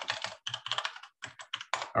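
Typing on a computer keyboard: a quick, uneven run of about a dozen keystrokes as a terminal command is entered.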